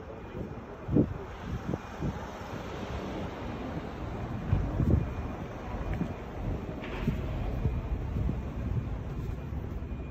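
Wind buffeting a phone microphone outdoors, a steady low rumble, with a few soft low thumps about a second in and again around the middle.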